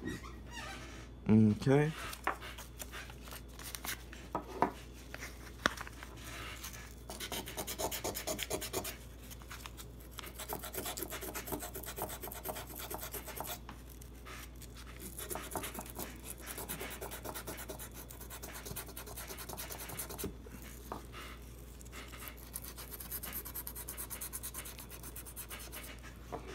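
Acetone-soaked cloth rubbed back and forth over a Taurus 709 Slim's pistol slide, a scratchy scrubbing in runs of quick strokes with short pauses between. The rubbing is stripping the black coating off the slide's steel.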